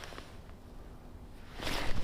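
Low rumble of wind and handling on a head-worn camera's microphone. Near the end comes a louder burst of rustling from clothing and camera movement as the angler swings the rod to set the hook on a bite.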